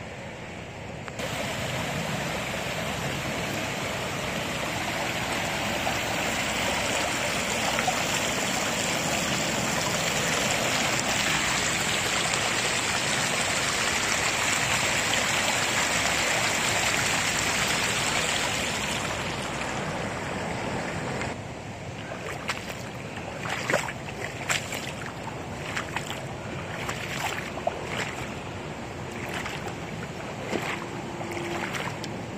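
Steady rushing of flowing floodwater, swelling toward the middle and easing off after about twenty seconds. It is followed by a quieter stretch with scattered short clicks and knocks.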